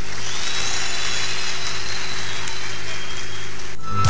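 Audience applauding and cheering in a steady, dense wash of sound with a faint low hum beneath, cut off abruptly just before the end.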